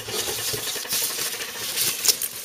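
Plastic packaging bags rustling and crinkling steadily as hands pull them out of a cardboard box.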